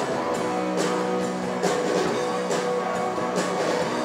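Live band playing guitars and drums with a steady beat of about two hits a second.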